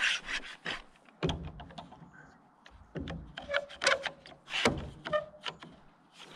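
One-handed bar clamp being fitted and tightened on a wooden board: irregular clicks and knocks with wood rubbing, and a couple of brief creaks as the board is drawn into place.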